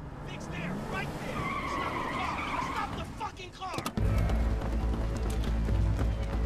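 A car skidding with its tyres squealing. About four seconds in, a deep low drone of film score comes in suddenly.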